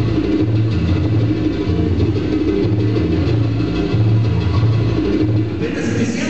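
Loud Latin dance music, of the cumbia kind a sonidero sound system plays, with a heavy bass line repeating in an even pattern.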